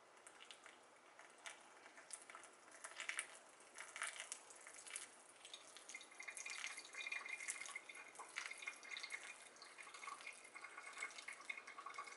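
A thin stream of hot water is poured from a gooseneck kettle onto coffee grounds in a ceramic pour-over dripper, making faint, uneven trickling and dripping.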